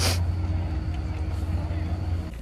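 Steady low mechanical hum of a chairlift terminal's drive machinery, with a faint steady tone above it. A short breathy rush right at the start.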